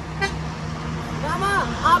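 A person laughing in short rising-and-falling bursts near the end, over a steady low hum.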